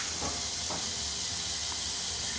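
A steady, even hiss that sets in abruptly with a click just before. A couple of faint taps sit under it.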